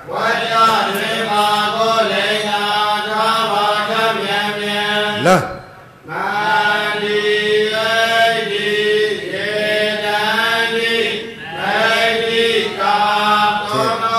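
A male Buddhist monk chanting a Pali text solo in a steady, sung recitation, holding level notes, with a short pause for breath about six seconds in.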